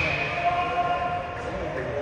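A referee's whistle blown in one long steady blast, trailing off about half a second in, over spectators' voices in the ice rink.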